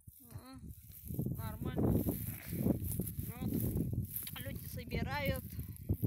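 Mostly speech: indistinct voices talking in short phrases, over a steady low rumble on the phone's microphone.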